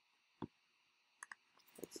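Computer mouse clicks against near silence: a single click, then a quick double click about a second later.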